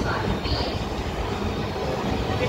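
Steady low rumble of a passenger train rolling slowly along a station platform, heard from on board.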